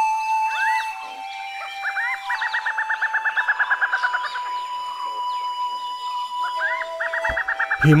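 Soft held flute-like music tones, with a bird's rapid trilling call over them: about ten quick chirps a second, each run opening with a rising note, heard twice, near the middle and again near the end.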